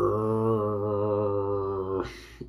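A man's voice holding one long, steady, low drawn-out 'oooh' for about two seconds, barely changing in pitch.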